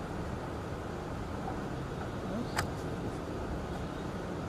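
Steady low background rumble and hiss with no clear source, broken by one sharp click about two and a half seconds in.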